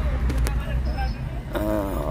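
Steady low rumble of a car heard from inside its cabin, with a single sharp click about half a second in. A man's voice starts near the end.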